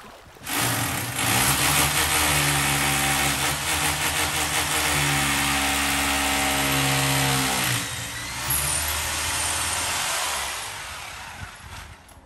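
Corded electric rotary hammer drilling into masonry overhead, running steadily for about seven seconds. It eases off briefly, runs a few seconds more, then winds down near the end.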